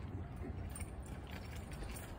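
Double-decker bus idling at close range: a low, steady rumble with faint irregular clicking and rattling over it.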